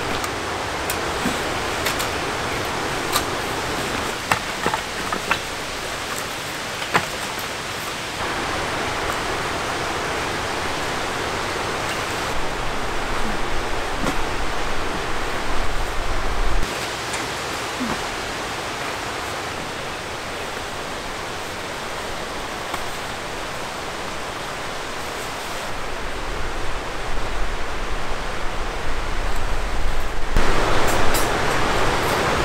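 Valley stream rushing steadily, with a few light clicks and knocks of camp gear being handled.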